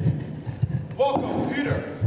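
Irregular low thuds from actors moving and kneeling on a stage floor. Two short voiced sounds from the cast come about halfway through.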